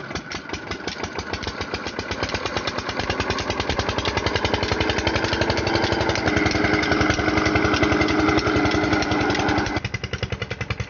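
Single-cylinder stationary diesel engine driving a belt-driven irrigation pump, its regular exhaust beats quickening and growing louder as it comes up to speed, then running steadily. Just before the end the sound drops abruptly to a quieter beat.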